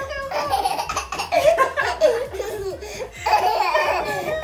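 A baby laughing, a run of high-pitched giggles.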